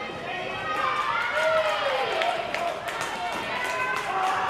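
Voices calling out in a large sports hall, one with a long falling call about halfway through, over general hall noise and a few sharp knocks.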